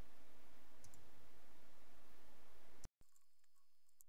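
Steady hiss of room tone with a few faint, sharp clicks. Near the end an edit cuts it off for an instant, and it resumes much quieter.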